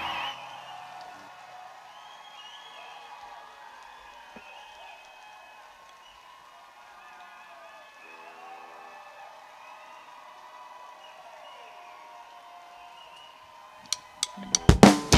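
A band number cuts off at the start, leaving a quiet pause in a musician's monitor mix with faint, distant voices. A drum hit comes right at the end.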